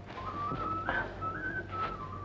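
A person whistling a short tune: one clear, thin tone stepping up and down between a few held notes.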